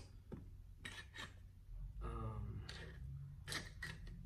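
Hand tools (screwdrivers and pliers) clicking against each other and rubbing as they are handled and slid back into the pockets of an electrician's tool belt pouch: several light, separate clicks.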